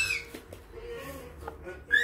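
A baby's short, very high-pitched squeal that ends just after the start, then a quiet stretch with only faint low sounds.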